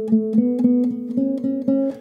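Nylon-string classical guitar playing a tremolando scale with one right-hand finger: quick repeated plucks, about six a second, several on each note, the pitch stepping up through a rising scale.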